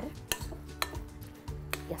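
A utensil stirring a thick, moist quinoa and vegetable mixture in a glass mixing bowl, with about three sharp clicks against the glass.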